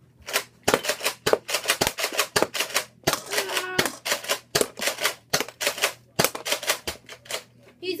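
Nerf blaster fired in rapid succession: a dense run of sharp clicks and snaps, several a second, with a short vocal grunt midway.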